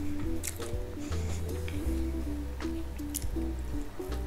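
Wet, sticky squishing and a few soft clicks as a slice of cheesy pizza is pulled free and lifted, over steady background music with a deep bass line and held notes.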